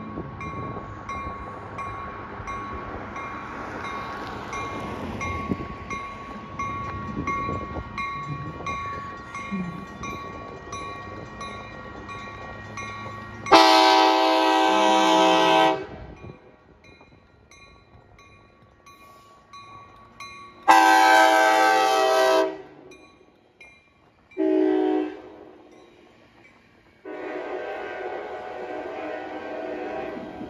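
An ACE commuter train's horn sounds the grade-crossing pattern, long, long, short, long, as the train passes with its cab car leading. The final blast is still sounding at the end. Before the horn, the train's approach rumbles steadily under a bell ringing in quick, regular strokes.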